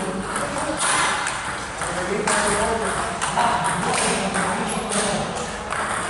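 Table tennis rally: the ball clicks sharply off rackets and table about every half second to a second, echoing in a large hall, over background voices.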